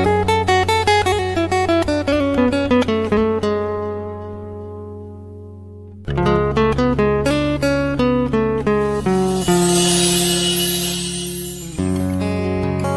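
Background music: a plucked acoustic guitar plays quick runs of decaying notes over a held bass. A new phrase starts about halfway through, and a bright hissing shimmer swells near the end.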